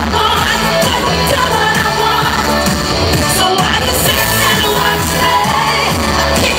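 Live amplified pop music with a beat and heavy bass, and a woman singing into a microphone over it.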